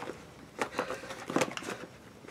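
Soft crinkling and a few light clicks from hands working the slider of a small plastic zip bag.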